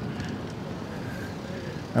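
Steady street traffic noise: a continuous hum of cars on the road.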